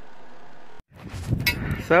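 Wind rumbling on the microphone after a brief dropout, with one sharp click about halfway through; a man starts talking at the very end.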